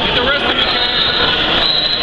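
Loud, steady crowd noise in a gymnasium with shouting voices, joined about a third of the way in by a thin, steady high-pitched whine.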